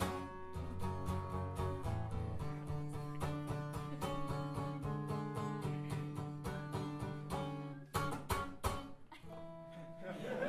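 Solo acoustic guitar strumming chords, no voice: an instrumental passage closing the song. A few sharp strums come about eight seconds in, then a chord is left ringing more quietly near the end.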